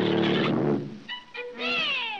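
Cartoon soundtrack: a loud, low brass blast from a sousaphone that a mouse blows into, then a few short notes and a high wailing cry that slides down in pitch near the end.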